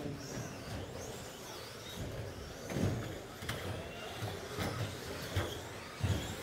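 Electric RC stock-class short-course trucks racing: the motors whine, rising and falling in pitch as they speed up and slow down. Several sharp knocks come in the second half.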